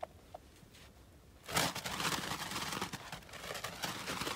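Hand-held snow goose flags being waved, the fabric flapping and rustling in quick strokes, starting about a second and a half in after a couple of faint clicks.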